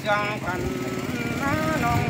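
A singer holds long, wavering, sliding notes of a traditional Tai (Hát Thái) song, unaccompanied by any instrument that can be made out. A steady low buzz runs underneath.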